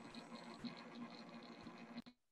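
Near silence: faint room tone from a video-call microphone, a low steady hum and hiss.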